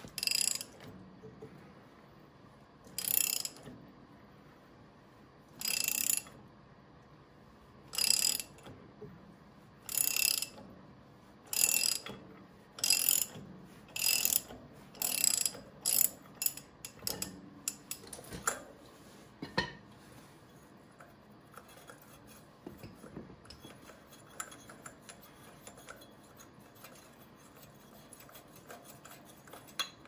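A socket ratchet wrench clicking in short bursts as a bolt on a David Bradley walking tractor's engine is turned. The bursts come every two to three seconds, then grow shorter and closer together and stop about two-thirds of the way through, leaving faint clinks of handling.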